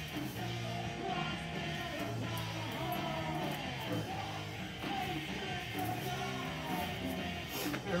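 Rock song with vocals and guitar playing steadily in the background.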